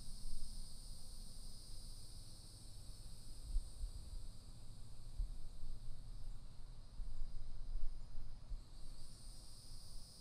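Faint, steady background noise with no distinct events: a low rumble beneath a thin, steady high-pitched hiss or drone.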